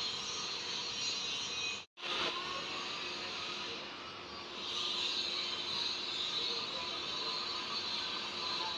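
Steady background noise, a faint hiss with a low hum, that drops out to silence for a moment about two seconds in and then carries on.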